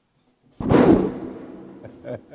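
A single sudden, loud impact-like boom about half a second in, fading away over roughly a second.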